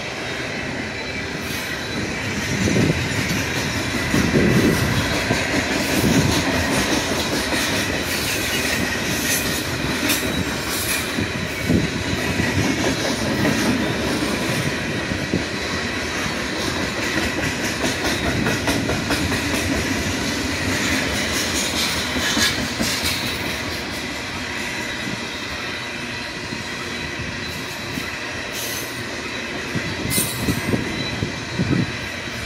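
Freight cars of a Union Pacific train creeping along at walking pace and coming nearly to a stop, with a steady high-pitched wheel squeal. Low rumbles swell through roughly the first half, with scattered clicks and creaks from the wheels and couplers.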